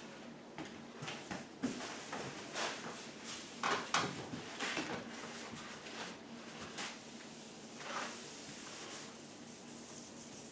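Blue shop paper towels wiping and rubbing across the sanded, cured epoxy countertop surface, in a series of irregular swishes, the loudest about four seconds in.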